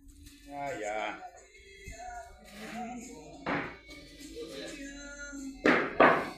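Hot sugarcane syrup being ladled in a large iron pan, with a brief noisy rush about halfway through and a louder one near the end as a ladleful is poured into the pan. Voices and music are heard faintly underneath.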